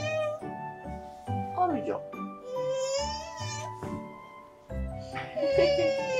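A toddler whining and crying in several high-pitched, drawn-out wails, a sulking cry, over background music with a steady beat.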